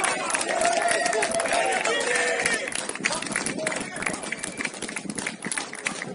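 Footballers shouting and cheering after a goal, heard from a distance, for the first two seconds or so, followed by a run of scattered sharp clicks and knocks.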